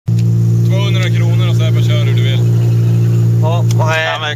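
Steady, even drone of a car's engine heard inside the cabin while the car is moving, with no revving, under voices talking. The drone stops suddenly at the very end.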